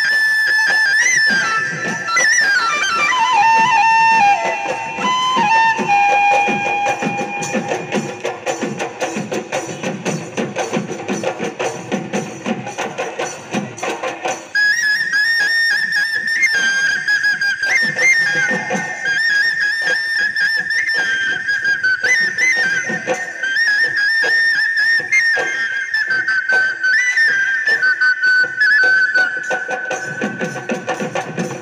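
Live Bihu music: dhol drums beaten in a brisk rhythm under a high, ornamented wind-instrument melody. The melody glides down and drops out for a few seconds, then comes back in high about halfway through.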